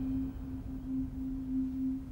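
Background score holding one steady low note that pulses slightly, over a low rumble.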